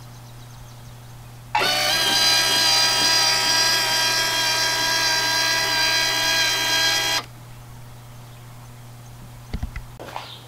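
Electric motor of a homemade solar-panel elevating rig running with a steady whine as it tilts a 50 W solar panel up from flat. It starts suddenly about a second and a half in and cuts off about seven seconds in, with the panel raised.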